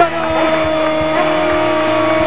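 Race car V6 engine held at high revs, one steady note that sinks slightly in pitch as the car runs past.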